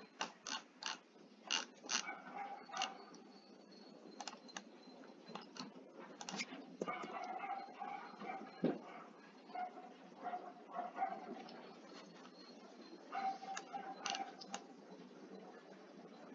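Computer mouse clicking in irregular bunches of sharp clicks, with a few ratchet-like ticks like a scroll wheel being turned, over a low room hum.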